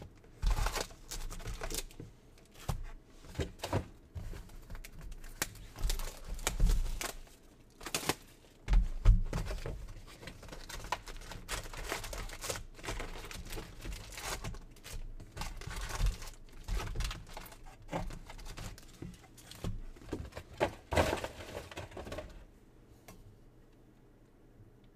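Plastic wrappers of Donruss baseball card packs crinkling and tearing as they are opened by hand, with scattered rustles and taps of cards being handled. The handling stops about two seconds before the end.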